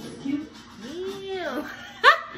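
A drawn-out exclaimed "damn" in a person's voice, its pitch rising then falling over most of a second, followed right at the end by a sudden loud burst of laughter.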